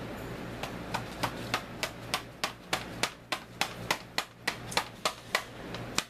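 A rapid, even run of sharp clicks made by hand, about four or five a second, starting about half a second in and stopping just before the end, over a steady low hum.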